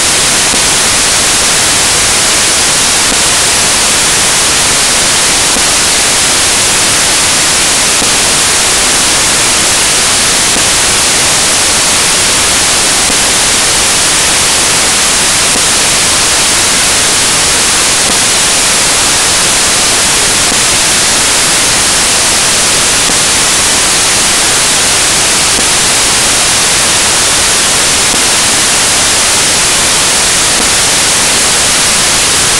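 A loud, steady hiss of white noise, even and unchanging, with most of its energy in the treble.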